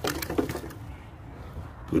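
A handful of quick wooden knocks and cracks in the first half-second, as a long wooden stick is set against a tree trunk, followed by a low rumble of handling and a man's voice at the very end.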